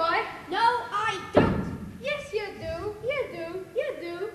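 A voice speaking lines of dialogue, broken by a single heavy thud about a second and a half in.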